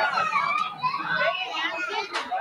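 Overlapping chatter of several voices talking at once, children's voices among them, with no single clear speaker.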